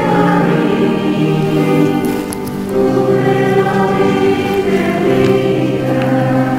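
A choir singing a slow hymn in several voices, long held notes moving from chord to chord, with a brief lull about two seconds in.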